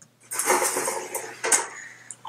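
Metal baking sheets scraping and clattering as they are pulled out of an oven's storage drawer, with a sharp metallic clank about a second and a half in.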